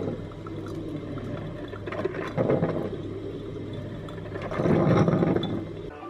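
Electric drip coffee maker brewing, with coffee running into its glass carafe over a steady low hum. The flow swells louder twice, about two and a half and five seconds in.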